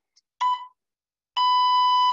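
Electronic workout interval timer beeping: a short beep about half a second in, then a longer steady beep at the same pitch near the end, the short-then-long countdown that closes a timed round.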